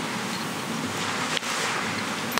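Steady background hiss of the hearing room's microphone feed, with a single faint click about a second and a half in.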